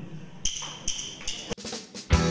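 Drummer's count-in: three sharp, evenly spaced clicks a little under half a second apart, typical of drumsticks struck together, then a sharper knock about one and a half seconds in.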